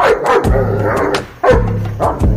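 German Shepherd barking twice, once at the start and again about a second and a half later, over background music with a steady beat.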